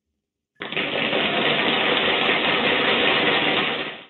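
Suspense drumroll sound effect: a steady, rapid roll that starts about half a second in and cuts off abruptly just before the answer is revealed.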